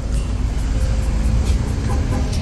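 Steady low rumble of motor traffic and nearby car engines, with faint music underneath.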